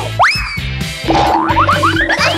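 Comedic background music with a cartoon sound effect: a quick upward pitch slide, like a boing or slide whistle, just after the start. From about a second in, a run of short rising chirps follows over the music.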